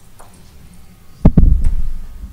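Microphone handling noise: a sudden burst of loud, low thumps and rubbing about a second and a quarter in, much louder than the faint room noise around it.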